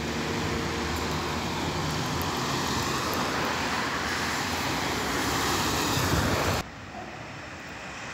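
Road traffic: cars passing on the street, a steady tyre and engine noise that swells slightly, then cuts off abruptly near the end, leaving a quieter background hum.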